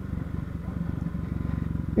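Honda CB Twister's single-cylinder engine running steadily at low speed, its firing heard as an even low pulsing while the bike cruises at about 22 km/h.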